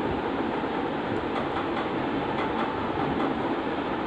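Steady rushing background noise at a constant level, with a few faint clicks.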